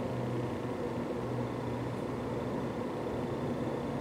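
Steady low hum with a faint hiss: room tone, with no distinct event.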